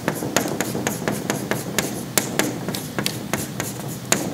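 Chalk writing on a chalkboard: an irregular run of sharp taps and short scratches, several a second, as letters are chalked onto the board.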